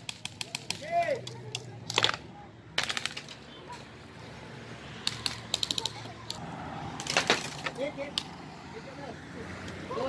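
Airsoft guns firing during a game: single shots and short rapid bursts of sharp clicks, scattered through the whole stretch, with a faint shout or two in between.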